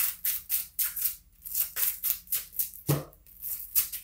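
Tarot cards being shuffled by hand: a quick, even run of riffling strokes, about three to four a second.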